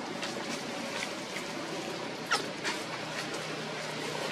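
Newborn macaque giving short, high squeaking cries, about five over the few seconds; the loudest, a little past halfway, falls sharply in pitch.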